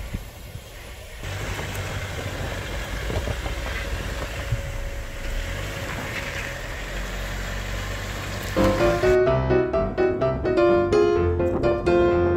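Jeep Wrangler Rubicon's engine running over snowy ground, a steady low hum under a rushing noise. Piano music comes in about three-quarters of the way through and carries on to the end.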